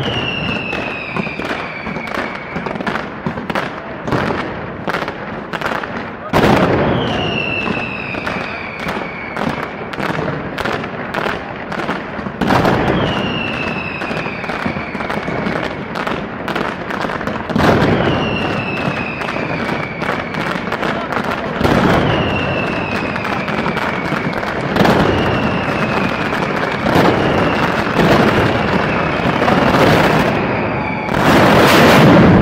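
Mascletà firecrackers going off in rapid, continuous volleys of sharp bangs, with heavier booms mixed in. Every few seconds a high whistle slides down in pitch over the bangs.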